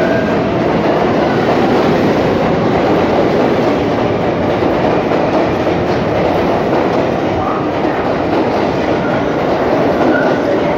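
An R142A New York City subway train pulling out of the station and running past the platform: a loud, steady rush of steel wheels on rail.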